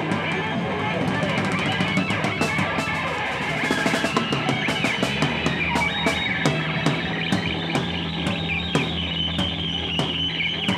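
Hard rock band playing live: electric guitar and bass guitar over a drum kit keeping a steady beat with regular cymbal hits.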